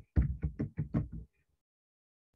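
Computer keyboard being typed on: a quick run of about eight keystrokes that stops a little over a second in.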